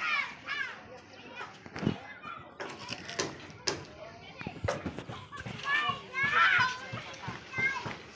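Children's high voices calling and chattering, loudest around six to seven seconds in, with a few sharp knocks in the first half.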